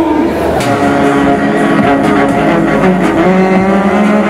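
Live band music on stage: sustained melodic notes over light percussion.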